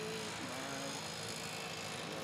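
Steady outdoor background noise with faint, distant voices.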